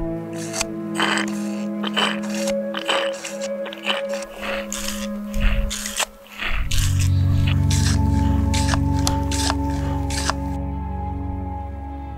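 Background music with steady sustained notes. Over it comes a quick, irregular series of short scraping strokes from a Katadyn hand-pump water filter drawing water from a seep, which stop about ten and a half seconds in.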